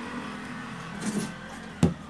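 Steady low background hum, with a faint short sound about a second in and a single sharp knock near the end, typical of a handheld camera being moved.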